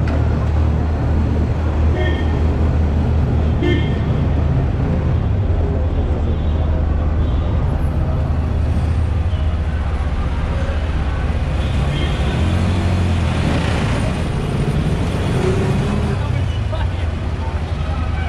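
Busy city street traffic: a steady low rumble of car, taxi and bus engines, with scattered voices of passersby.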